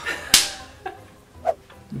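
A single sharp crack, like a whip crack or hard smack, about a third of a second in, trailing off quickly, followed by a couple of faint small sounds.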